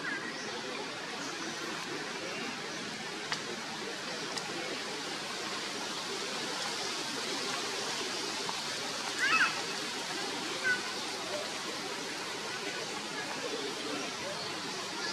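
Steady outdoor background hiss in a forest canopy, with a short high squeal that sweeps up and down about nine seconds in and a faint chirp a second later.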